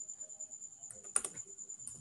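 A few computer keyboard key presses, the sharpest about a second in, over a faint steady high-pitched whine.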